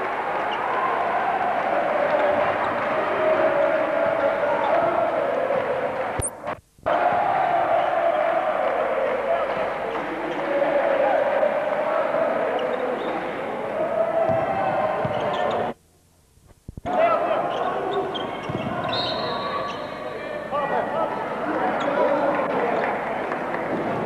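Basketball game sound: a basketball bouncing on the court over steady arena crowd noise. The sound cuts out twice, once for a moment and once for about a second.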